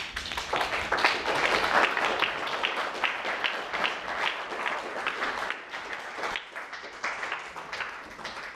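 Audience applauding: the clapping starts suddenly, is fullest over the first few seconds and thins out toward the end.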